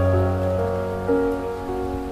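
Slow background piano music: a few soft, held notes starting one after another, over a steady rain-like hiss.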